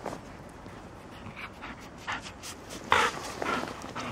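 Golden retriever panting: a run of short breaths, the loudest about three seconds in.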